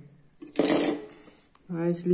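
A brief metallic clatter lasting about half a second, as the soldering iron is lifted out of its metal stand. It is followed by a man's voice starting to speak near the end.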